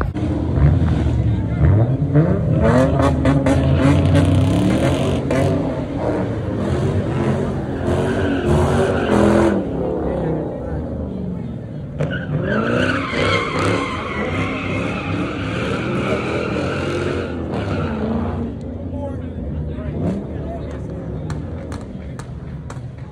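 A car engine revving hard, its pitch rising and falling repeatedly, for about the first ten seconds. Then, a little past halfway, tires squeal for about five seconds while the engine keeps revving, as a car spins its wheels in a burnout.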